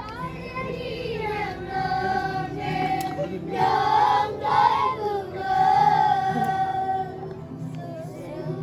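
A group of children singing a song together, several voices holding and gliding between sung notes.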